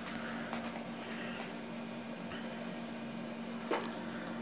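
Faint steady low hum with hiss, and a light click shortly before the end.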